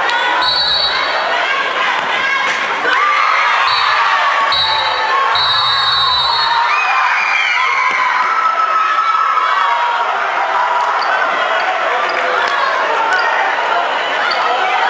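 Crowd of schoolchildren shouting and cheering in a large sports hall during a futsal match. A few short, high-pitched blasts sound in the first half.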